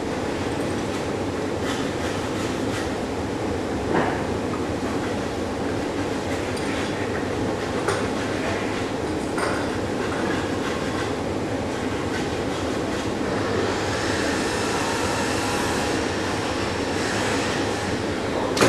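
Steady mechanical hum and hiss of a large workshop's ventilation, with a few light knocks from work on the bench about four, eight and nine seconds in.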